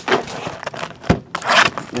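Cardboard trading-card hobby box being handled and slid on a tabletop: scraping and rubbing, with a single knock about a second in.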